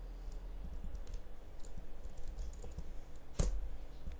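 Typing on a computer keyboard: scattered light keystrokes, with one louder click about three and a half seconds in.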